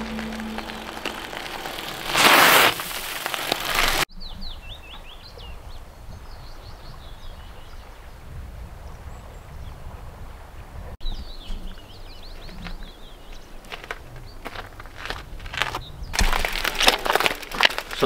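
Outdoor ambience with short bird chirps and calls over a quiet background. A loud rush of wind and tyre noise comes about two seconds in, and again with rattling in the last two seconds, as a gravel bike rides close past.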